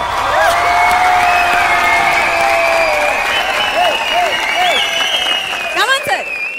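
Studio audience applauding and cheering, with drawn-out shouts and whoops over the clapping.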